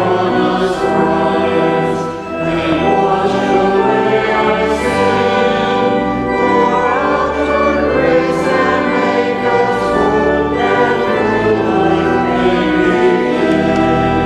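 Group of voices singing a liturgical hymn in church, holding long notes over a sustained accompaniment.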